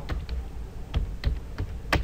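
Typing on a computer keyboard: a run of irregular key clicks, the loudest near the end.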